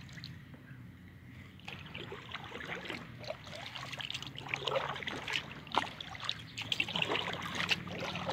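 Kayak paddle strokes in calm water: small splashes and drips running off the blade, irregular and growing louder and more frequent after the first couple of seconds.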